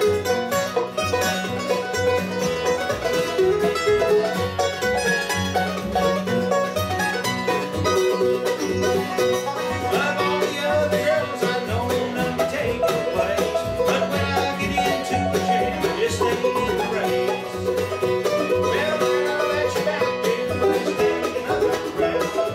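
Bluegrass band of five-string banjo, mandolin, acoustic guitar and upright bass playing an instrumental passage together, the banjo prominent over steady picked rhythm and bass.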